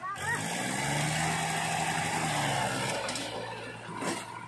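Diesel engine of a Powertrac 434 DS Plus tractor working under load as it pulls a loaded mud trolley out through deep mud. The engine note climbs and holds for a moment, then falls back.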